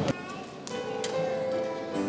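Quiet instrumental music with soft held notes, the opening of a choir song's accompaniment. Two faint clicks fall near the middle.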